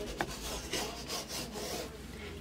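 Hands rubbing a Chalk Couture adhesive silkscreen transfer flat against a chalkboard, a dry scraping rub that presses out air bubbles, with a light tick about a fifth of a second in.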